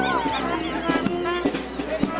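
Chatter of children and adults, mixed with short, high squeaky chirps that repeat quickly throughout.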